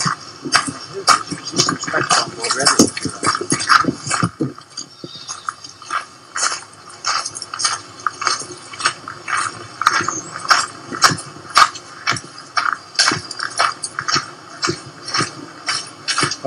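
Footsteps of people walking on a hard path, sharp irregular steps at about two a second, with indistinct voices.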